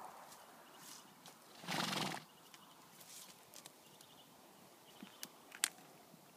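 A horse vocalises once, loud and about half a second long, about two seconds in. A few faint sharp clicks follow near the end.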